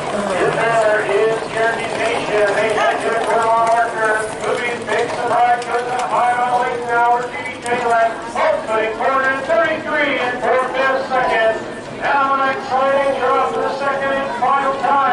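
A race caller's voice over the track's public-address system, calling a harness race in an almost unbroken stream of speech.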